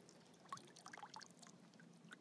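Faint trickle and scattered drips of water poured slowly from a small sample cup into lake water.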